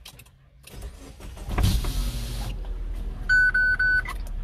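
A car starting up, heard inside the cabin: a rush of starter and engine noise for about two seconds settles into a low idle. Near the end a dashboard warning chime beeps about four times.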